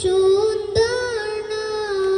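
A girl singing solo over a public-address system, holding long notes of a slow melody that glide up and down in pitch.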